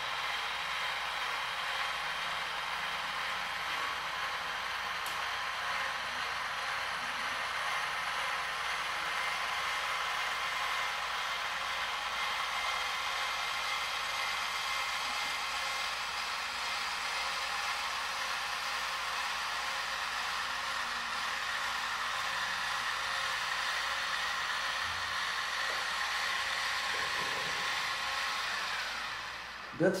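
Sky-Watcher AZ-GTi altazimuth mount's motors slewing at speed on a GoTo command, a steady whir with a high whine. It stops near the end as the mount arrives at its target star.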